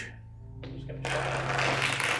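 Low background music drone with a broad, hissing swell that builds about half a second in and stays loud to the end.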